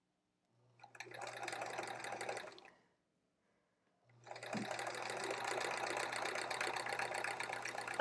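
Electric sewing machine stitching in two runs: a short run of under two seconds, a pause, then a longer steady run from about four seconds in, a low motor hum under rapid needle ticking.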